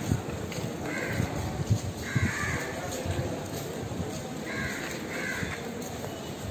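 Crows cawing, about four caws, with a longer one about two seconds in and two close together near the end, over a low background rumble.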